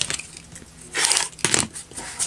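Rotary cutter drawn along a quilting ruler, trimming the edge of a pieced fabric block on a cutting mat: one short cutting stroke about a second in, followed by a light knock.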